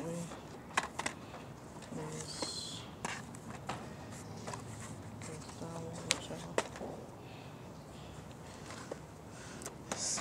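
Faint, indistinct voices in the background, with a few sharp clicks and taps scattered through, the loudest two close together about six seconds in.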